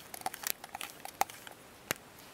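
Plastic pen barrel being screwed together by hand: a scatter of light clicks and rubbing from the threads and fingers on the barrel, with one sharper click shortly before the end.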